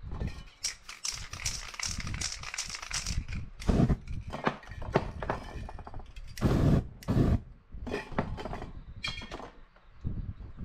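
A hand rubbing and pressing a sheet of paper flat over wet spray paint: papery rustling and scuffing, with a few dull thumps of handling, the loudest about four seconds in and again around six and a half to seven seconds.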